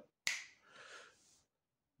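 A single sharp click, like a mouth or lip click, then a short, faint breathy hiss lasting about a second, as the man draws breath before starting to speak.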